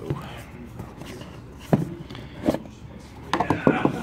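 Cardboard Pokémon Elite Trainer Box being opened, its lid lifted off the base: two sharp knocks of cardboard against the table, then a quick run of clicks and rattles near the end as the inner box is handled.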